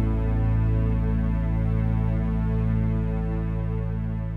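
The final held chord of a slow love song, ringing steadily over a deep low note and slowly fading out.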